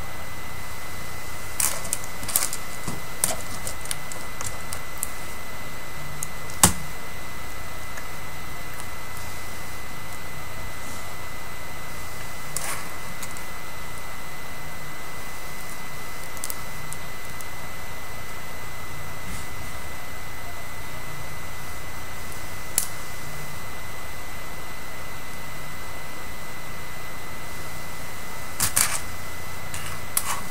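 Scattered small clicks and light knocks from hands working hair and pins close to the microphone: a few early, a louder one about six and a half seconds in, odd single ones later and a quick cluster near the end. Under them runs a steady hiss with a thin, constant high whine.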